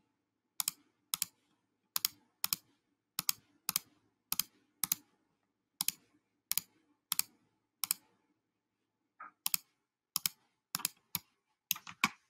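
Computer mouse clicking: about eighteen short, sharp clicks at irregular intervals, often in quick pairs, with a pause of about a second around two-thirds of the way through.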